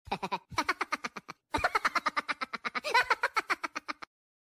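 A cartoonish voice-like sound effect: a rapid run of short, high-pitched pulses, about ten a second, with a brief break a little over a second in.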